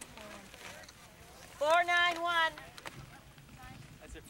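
One loud, drawn-out shout from a person, held a little under a second and starting about one and a half seconds in, over a faint steady outdoor background.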